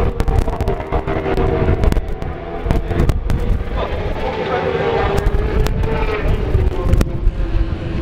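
Superbike engine running at high revs, the pitch wavering as it works through a corner, with a voice talking in the background and sharp pops and clicks throughout.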